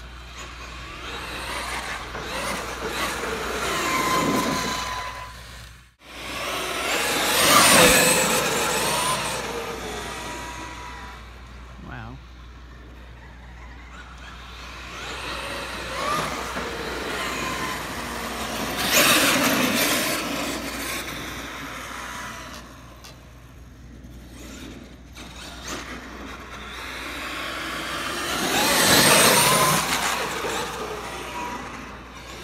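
Traxxas X-Maxx RC monster truck with a 1650kv brushless motor driving hard on asphalt: motor whine and tyre noise swell and fade as it accelerates and passes, four times.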